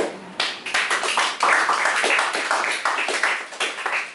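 A small audience clapping, a dense patter of hand claps starting about half a second in.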